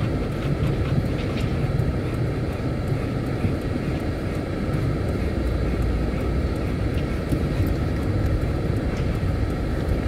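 Car cabin noise while driving slowly: a steady low rumble of engine and tyres rolling over brick paving.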